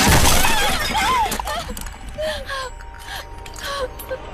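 A loud shattering crash at the start, followed by a person's cries and gasps.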